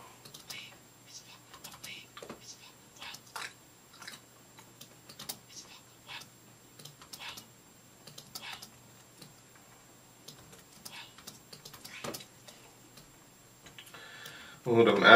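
Faint, irregular taps and clicks of a computer keyboard and mouse, roughly two a second, as a recording is edited on the computer.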